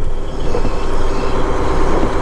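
Steady running noise inside a semi-truck cab as it drives without a trailer: a diesel engine rumble with tyre hiss from the wet road.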